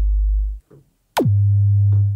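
Kick drum resynthesized in Steinberg Backbone with Spectral Hold on, played from a keyboard. Each hit drops sharply in pitch, then its tonal sub-bass part holds as a steady low tone instead of decaying. One held note stops about half a second in; a second hit about a second in holds on a higher note.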